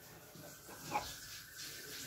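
Ballpoint pen writing on paper, faint, with a brief louder sound about a second in.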